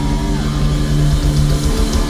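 Thrash metal band playing live through a festival sound system: distorted electric guitars holding long notes over bass and drums, with one note sliding down in pitch about half a second in.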